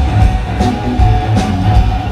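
Live blues band playing an instrumental stretch between vocal lines: electric guitar over bass and drum kit, with a steady beat and a long held guitar note.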